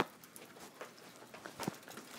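A sharp click at the start, then faint rustling and scattered soft taps: a phone's microphone being handled and rubbing against a cotton hoodie.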